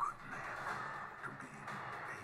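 Film trailer soundtrack music playing.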